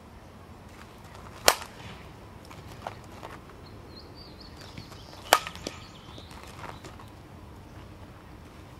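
Softball bat striking a softball twice, about four seconds apart: a sharp crack about a second and a half in and another about five seconds in, each followed by a few fainter clicks. Birds chirp faintly in the background.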